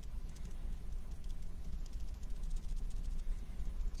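Rapid, light tapping of a foam sponge dabbing fabric paint onto a poly stamping plate, over a steady low hum.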